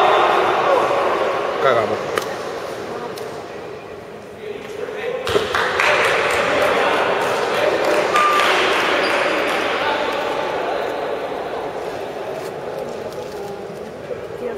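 Indistinct voices of players and spectators echoing in a large sports hall, with a few sharp knocks, the most prominent about five seconds in.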